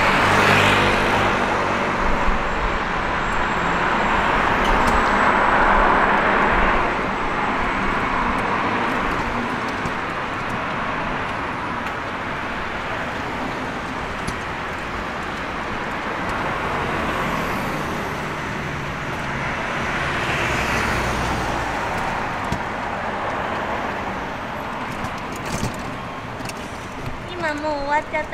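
City street traffic: cars and a motorcycle passing close by, a steady road noise that swells over the first several seconds and again about twenty seconds in, then fades.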